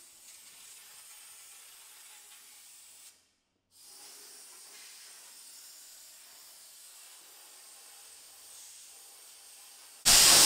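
Faint, steady hiss of an Arçelik steam cleaner blowing steam from its hose nozzle onto a panel radiator. The sound cuts out briefly about three seconds in, then resumes.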